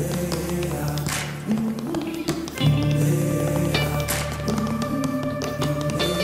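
Tap dancing: a run of sharp, irregularly spaced shoe taps on a wooden stage floor over the song's instrumental backing of sustained chords and bass.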